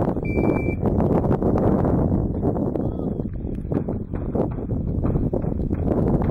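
Electronic shot timer giving its start beep, a single steady electronic tone of about half a second, about a quarter second in, signalling the start of the stage. A steady rumble of wind on the microphone runs underneath.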